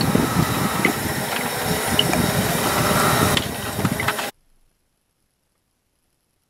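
Cooking on a camp stove in a hunting blind: a steady hiss and rumble with a few faint small crackles as something is poured into a skillet. It cuts off suddenly about four seconds in, leaving near silence.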